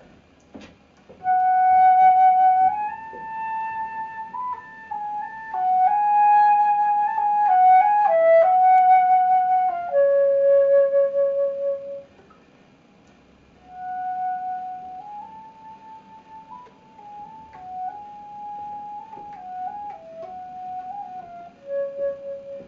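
Trevor James Recital silver flute with a Flutemakers Guild of London headjoint playing a slow melody an octave up. A first phrase at about piano ends on a held note. After a short pause the phrase comes again much more quietly, testing how softly the flute will play.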